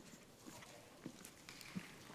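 Faint footsteps on a wooden stage floor: a few soft, scattered taps and shuffles as children walk and sit down.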